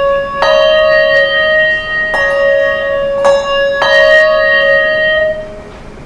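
Two brass handbells rung in turn with gloved hands: four clear strikes on two neighbouring pitches, each note ringing on until the next and the last fading out near the end. It is a demonstration of one way of ringing consecutive notes that the ringer regards as wrong.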